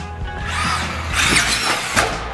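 Electric RC buggy whining and rushing as it launches off a ramp, then a clatter as it lands near the end, over background music.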